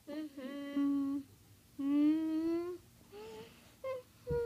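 A child humming: two long held notes about a second each, the second rising slightly in pitch, then a short higher note near the end.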